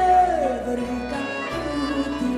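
Greek band music with a violin melody that slides down in pitch over about half a second and then holds a low note, over a steady bass line.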